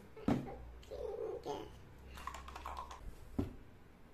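A toddler making short squealing vocal sounds, with two sharp knocks as a plastic bowl and cardboard box are handled: a loud one just after the start and another near the end.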